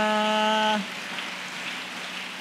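A voice on the microphone holding one long, steady drawn-out vowel that breaks off a little under a second in, followed by a steady hiss of room noise.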